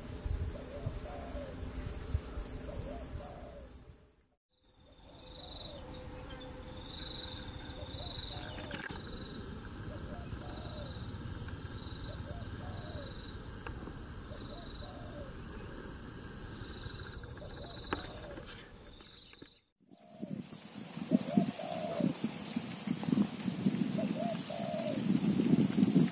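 Doves cooing over and over, with insects trilling steadily in the background. The sound breaks off into brief silence twice, about four seconds in and again about twenty seconds in.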